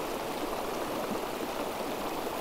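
Small rocky mountain stream flowing steadily over stones.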